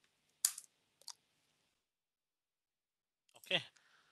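Two sharp computer clicks about half a second apart, the second fainter, from keyboard or mouse as a login is submitted. Near the end comes a short sound that falls steeply in pitch.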